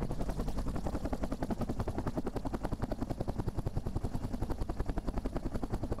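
An engine running with a fast, even pulsing beat, holding steady throughout.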